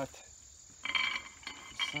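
Insects chirping in short bursts, a cricket-like trill about a second in and again near the end.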